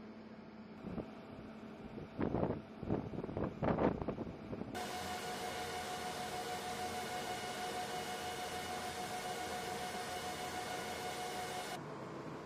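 A few loud knocks and clunks in the first four seconds, then a sudden switch to the steady noise inside an MC-130J Commando II's cargo hold with its four turboprop engines running: an even rush with a constant whine on top, which cuts off shortly before the end.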